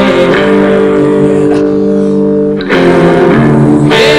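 Live rock band music: electric guitar holding sustained chords over bass, the chord changing about a third of a second in and again near three seconds.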